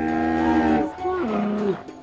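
A camel's short, wavering low moan about a second in, following a long held low note that cuts off just before it.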